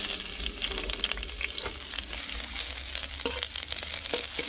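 Sliced garlic sizzling in hot oil in a wok: a steady hiss with small crackling spatters, and a metal ladle stirring and scraping the pan now and then.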